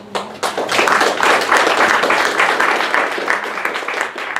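Audience applauding: many hands clapping together, starting just as the talk ends and thinning slightly near the end.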